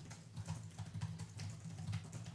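Faint, irregular light clicks over a low, steady hum.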